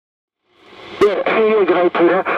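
Half a second of dead silence, then hiss rising as an incoming AM signal comes up on a Seacom 40B 160-metre transceiver. A click about a second in is followed by a man's voice over the receiver's speaker, thin and narrow in tone.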